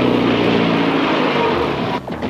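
Jet aircraft engine noise: a steady rush with a low hum that falls slowly in pitch and fades a little near the end.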